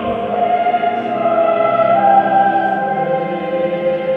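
Slow choral music, voices holding long notes that shift gradually in pitch.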